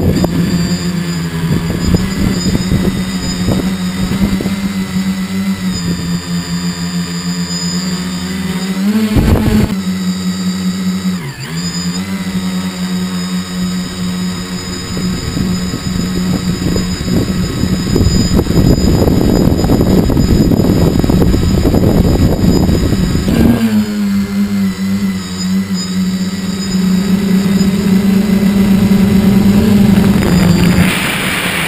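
Tricopter's electric motors and propellers humming at a steady pitch, heard from the onboard camera, with a brief dip in pitch about eleven seconds in as the throttle eases. Wind rushes over the microphone from about sixteen to twenty-three seconds in.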